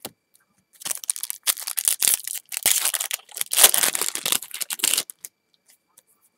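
Foil wrapper of a 2012 Topps football card pack being torn open and crinkled: a dense crackle that starts about a second in, runs for about four seconds, and stops suddenly.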